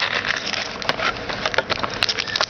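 Trading-card pack wrapper crinkling and rustling against cardboard as a pack is pulled out of a blaster box and handled, a dense run of crackles and small clicks.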